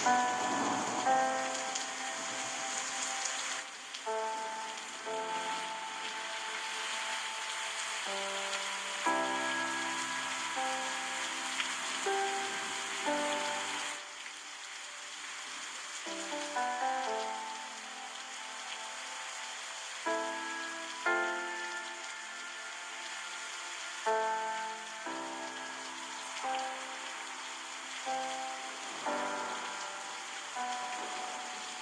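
Steady rush of running river water, with a slow, gentle instrumental melody of held notes played over it.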